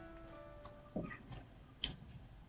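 A few faint, short clicks from writing on a digital whiteboard with a pen tool: three ticks about a second in, a third of a second later, and half a second after that.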